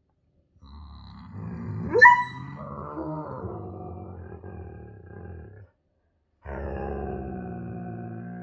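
Husky howling: two long, drawn-out vocalizations with a short gap between them, the first rising to a sharp, loud peak about two seconds in.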